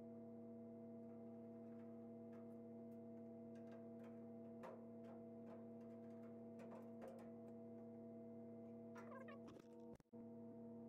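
Near silence: a faint steady electrical hum, with a few light clicks and taps of a screwdriver working against the sheet-metal inner panel of the truck door, the busiest of them near the end.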